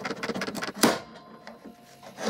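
One-handed bar clamp trigger ratcheting in a run of short clicks as it presses on a biscuit-joined poplar end-grain glue joint. A little under a second in, a single sharp crack as the joint snaps, with the biscuit breaking in half.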